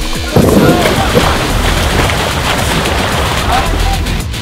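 Background music with a steady bass line and heavy low hits.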